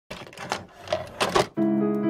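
A few short clacking noises like typewriter keys, then about one and a half seconds in a sustained piano chord starts and rings on.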